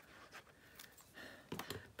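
Faint rustling and light taps of a cardstock panel being handled over a paper card base, a few brief soft sounds, slightly stronger near the end.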